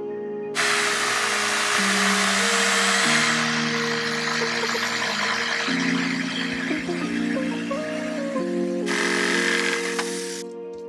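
Corded jigsaw cutting through a wooden board, a steady buzzing saw noise that starts about half a second in, under background music.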